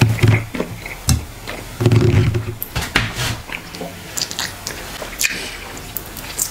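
Close-up mouth sounds of eating fufu and egusi soup with goat meat by hand: wet chewing, lip smacks and finger sucking, with a short low hum near two seconds in.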